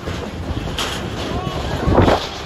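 Rushing whitewater of a fast mountain river with wind buffeting the microphone, and faint voices calling in the second half. A louder gust sounds near the end.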